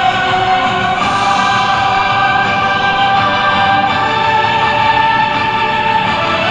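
Recorded music over the field's loudspeakers for the drum major to conduct to: slow, long held chords that shift every second or so, at a steady loudness.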